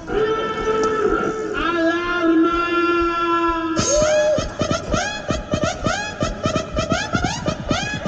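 Electronic background music: held synth chords, then about four seconds in a fast, driving electronic beat with pulsing synth notes kicks in.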